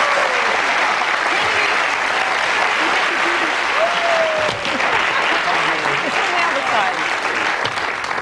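Studio audience applauding steadily, with a few voices faintly heard through the clapping.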